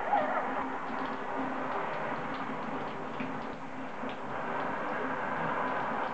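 Shower water running, a steady even spray falling on the hand and tiled wall.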